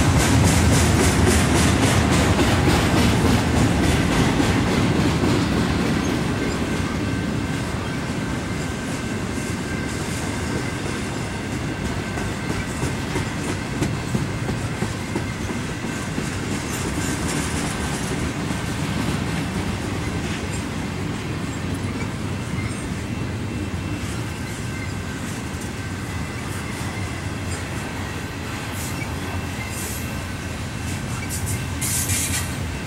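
Double-stack intermodal well cars rolling past: the steady rumble and clickety-clack of steel wheels on the rails, with a faint thin whine from the wheels running through it. It is a little louder for the first several seconds, then eases.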